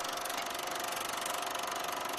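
Fast, even mechanical clatter of a film-projector sound effect, running steadily.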